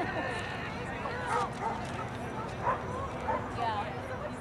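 A dog barking a few short times, with people's voices around it.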